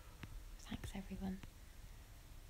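A woman's voice, quiet and half-whispered, in a short stretch about a second in.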